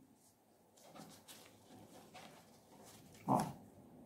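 Faint handling of a cardboard template and fabric on a cutting mat: a few soft rustles and light taps as the pattern is slid into place.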